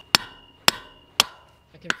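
Four-pound sledgehammer striking a half-inch rebar stake driven into frozen ground packed with stone: three sharp metal-on-metal blows about half a second apart, each leaving a high ring hanging after it.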